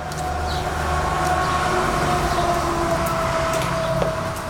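A steady mechanical drone with a low hum and several held tones, the highest of them sagging slightly in pitch partway through.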